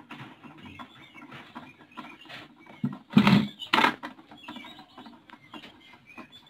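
Light knocking and scraping on a plastic bucket rat trap, with two louder knocks a little past halfway. Faint short high chirps come and go throughout.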